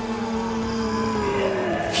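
Soundtrack music under a fight: sustained low notes that slide slightly down in pitch, with no beat. A man's battle shout breaks in at the very end.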